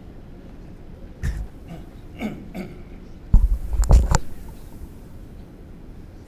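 A person clearing their throat close to a microphone, with short rough vocal sounds about two seconds in and a loud cough-like burst a little past the middle.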